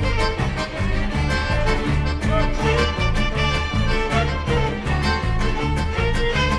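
Live klezmer band (fiddle, clarinet, accordion and double bass) playing a traditional dance tune, with the double bass keeping a steady, regular beat under the melody.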